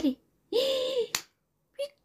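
A short vocal exclamation held on one steady, higher pitch, then a single sharp click like a finger snap.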